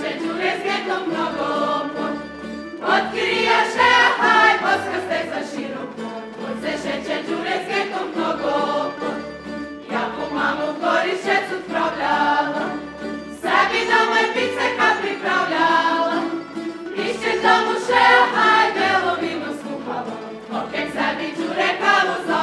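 Men's and women's voices singing a Međimurje folk song in unison, with a tamburica band accompanying them and plucked bass notes underneath. The melody comes in phrases of about three to four seconds, each rising and falling.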